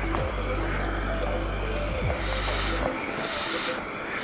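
Two short hisses of air about a second apart, from positive-pressure ventilation breaths given with a bag and mask to a newborn manikin after its mouth has been opened as a corrective step.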